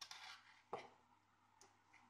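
Faint handling noise of small wires and a miniature DPDT switch being turned in the fingers: a short rustle, then a light click a little under a second in and a fainter tick later.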